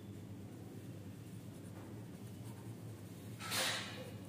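A pen writing on paper, faint scratching strokes over a low steady hum. A short hiss about three and a half seconds in.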